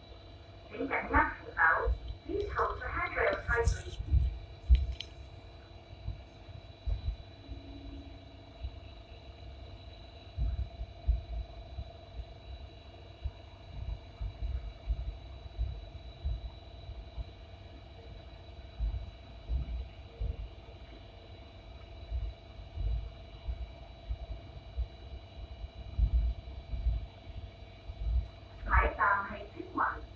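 Hong Kong Light Rail car running along the track: a low rumble with uneven thuds from the wheels and a steady electrical hum. A voice, likely the onboard announcement, is heard about a second in and again near the end.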